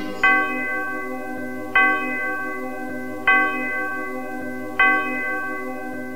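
A bell struck four times on the same note, about every one and a half seconds, each stroke ringing on under the next.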